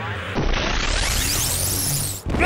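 A rising whoosh transition effect: a noise sweep that starts suddenly about half a second in and climbs steadily in pitch, over a low steady music bed.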